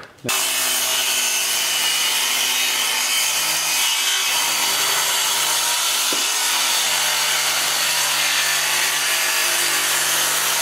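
Cordless circular saw ripping along the edge of a plywood sheet in one steady continuous cut, starting just after the opening moment. The blade is one the user says obviously needs replacing.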